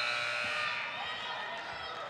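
Shot-clock violation horn dying away in the first moment as the clock expires, leaving a steady murmur from the arena crowd.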